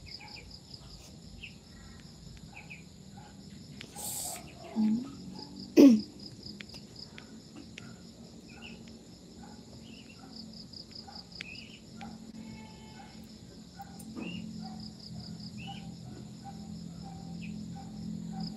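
Crickets chirping in a steady, rapidly pulsing high trill, with scattered small chirps. Two short loud sounds come about five and six seconds in.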